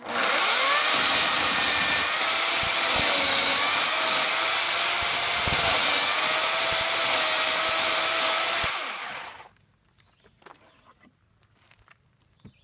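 Corded Makita electric chainsaw starting up and running steadily as it cuts a bird's-mouth notch into a wooden beam, its motor pitch wavering slightly as the chain works through the wood. It is switched off about nine seconds in and winds down.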